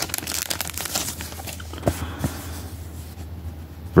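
Thin clear plastic sleeve crinkling as a sticker is slid out of it. The crackle is busiest in the first second and a half, then eases to quieter handling with a couple of soft clicks about two seconds in.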